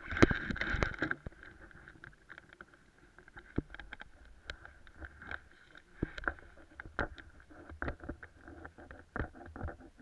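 Irregular clatter of knocks and rubbing close to a helmet-mounted camera, loudest in the first second, then scattered sharp clicks.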